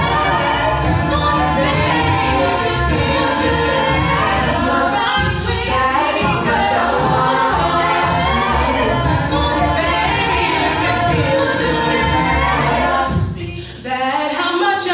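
Mixed a cappella group singing: a woman's lead vocal over layered backing voices and a steady beatboxed vocal-percussion beat, with a brief break near the end.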